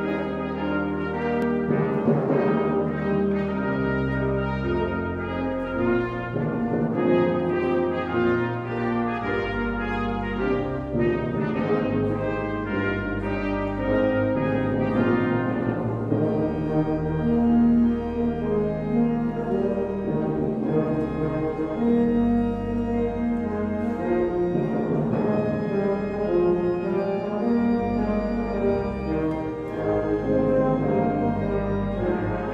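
Brass quartet of trumpets, tenor horn and tuba playing a chordal hymn-like opening piece, the chords changing every second or two over a sustained tuba bass.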